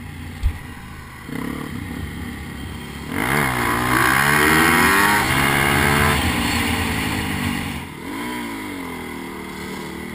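Dirt bike engine under hard throttle on sand: it revs up sharply about three seconds in, holds high for a few seconds, eases off, then picks up again. A single sharp knock comes about half a second in.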